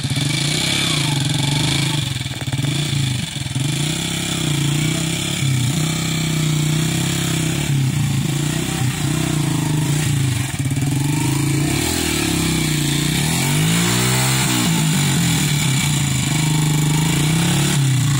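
Small commuter motorcycle engine running loudly and unevenly, its revs rising and falling as the bike is worked through deep mud under heavy load.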